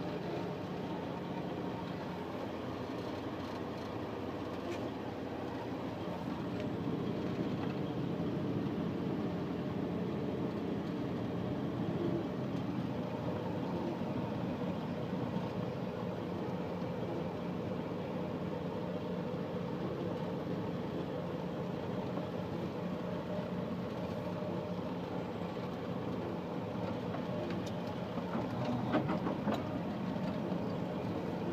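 Steady engine hum and road noise heard from inside a vehicle's cabin as it drives slowly along a street, with a few short clicks near the end.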